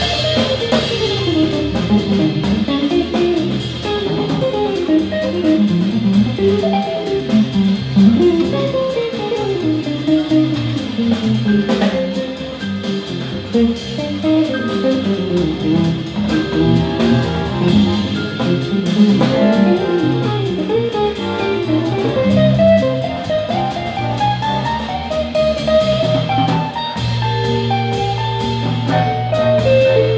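A small jazz band playing live: electric guitar, accordion, vibraphone, electric bass and drum kit, with fast melodic runs over the rhythm section. Near the end the bass holds a long low note.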